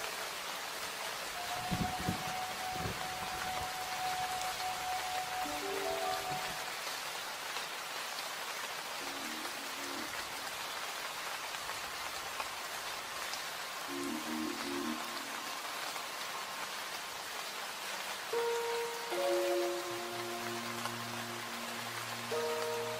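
Steady rain hiss with soft, sparse music over it: a few held notes at a time drift in and out, with more notes gathering near the end. There are a couple of soft low thuds about two seconds in.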